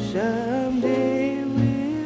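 A woman singing a slow jazz ballad with band accompaniment, her voice sliding up early on into a long held note.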